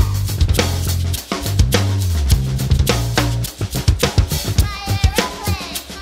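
DW drum kit with Murat Diril cymbals played in a busy groove of kick, snare and cymbal strikes, over a funk-rock backing track with a prominent bass guitar line. The bass line stops about halfway through while the drumming carries on.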